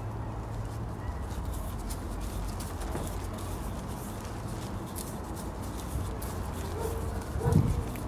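Fingers pressing and firming gritty, perlite-laced potting mix around a cactus cutting in a small pot: faint scattered crackling clicks over a steady low hum. Near the end comes a short, louder low thump with a brief hummed tone.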